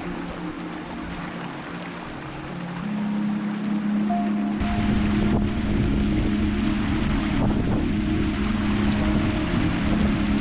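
Rushing water of a small moorland stream tumbling over rocks, with wind buffeting the microphone; the rumble grows louder about halfway through.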